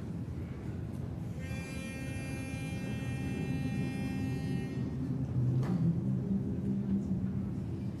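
A pitch pipe sounds one held note for about three seconds to give the starting pitch for an a cappella hymn. Under it runs the low hum of a large congregation finding its starting notes.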